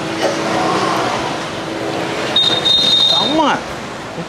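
Motor scooter passing close by on a street, its engine rising and fading over about two seconds. A brief high-pitched tone follows about two and a half seconds in.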